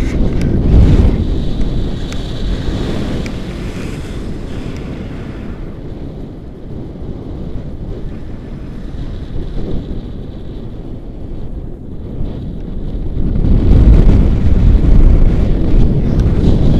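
Wind from a paraglider's flight rushing over the camera microphone, a steady low rumble of buffeting. It is loudest in the first couple of seconds and grows louder again from about thirteen seconds in.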